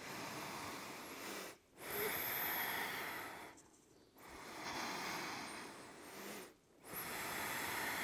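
A woman's slow, deep breathing close to the microphone: about four long breaths with brief pauses between them.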